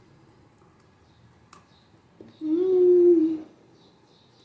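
A woman's closed-mouth "mmm" of enjoyment while eating, one steady hum about a second long, a little past the middle. Before it, quiet with one faint click.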